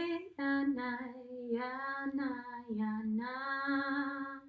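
A woman singing wordless light language: a run of long held notes with short breaks between them, the pitch dipping lower for a moment near three seconds in.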